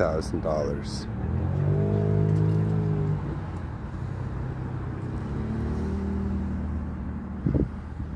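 A car engine passing by, its pitch rising and then falling, starting about a second in. A second, fainter one follows past the middle.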